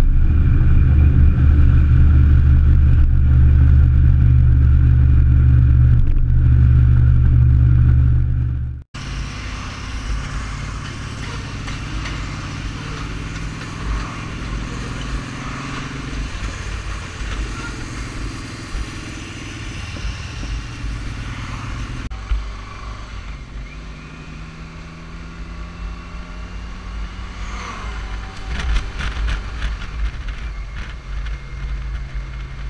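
Touring motorcycle cruising on the road, its engine drone mixed with wind and road noise picked up by the bike-mounted cameras. For the first nine seconds the sound is loud and deep and steady. After a sudden cut it is quieter and airier.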